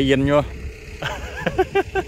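A Kobelco hydraulic excavator's diesel engine idling, a steady low hum under talk.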